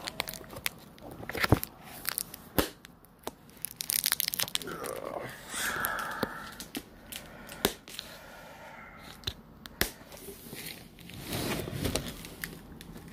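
Plastic rustling and crinkling with scattered sharp clicks and knocks as a clear plastic carry case of bag-wrapped diecast cars is handled.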